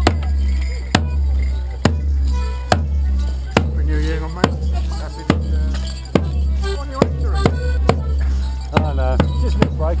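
Border Morris band music: a bass drum struck on a slow, steady beat, a little over one boom a second, over steady low sustained notes. Sharp clacks come thicker and faster over the last few seconds.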